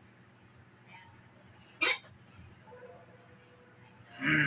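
A man's single sharp hiccup, about two seconds in.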